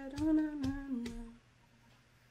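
A woman hums a wordless tune on "na, na" syllables, in short notes that step downward in pitch. She breaks off about a second and a half in, and near silence follows.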